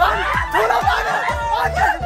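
Young men laughing and shrieking loudly over background music.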